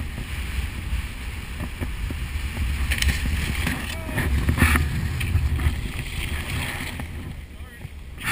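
Wind rumbling on an action camera's microphone over the hiss of skis sliding on snow. A few sharp knocks and scrapes come as the skis meet a box rail, the clearest about three and about four and a half seconds in.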